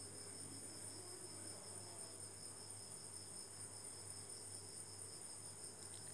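Faint steady background: a continuous high-pitched trill with a low hum beneath it, and nothing else happening.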